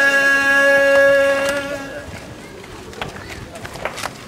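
A male reciter's chanted elegy, amplified through a handheld microphone, ends on one long held note that stops about two seconds in. After it comes quieter background noise from the gathered crowd, with a few faint knocks.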